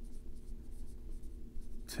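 Marker writing on a whiteboard: a run of faint scratching strokes over a steady low electrical hum.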